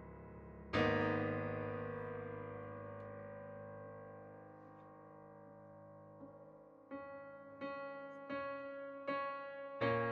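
Background piano music: a chord struck about a second in rings on and slowly dies away, then single notes follow at an even, unhurried pace near the end.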